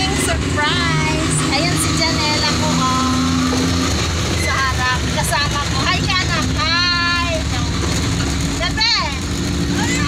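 Engine and road noise of a moving passenger vehicle heard from inside its rear cabin, a steady low hum, with voices talking over it.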